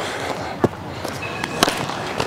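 Baseball smacking into a leather fielding glove during a game of catch: one sharp pop about one and a half seconds in, after a fainter click earlier.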